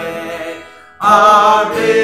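A man singing a worship song to his own acoustic guitar. A held note fades away, and a new loud sung line starts about a second in.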